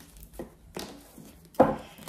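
Tarot cards handled on a hard tabletop: a few faint taps and slides, then one sharp knock of the cards against the table about one and a half seconds in.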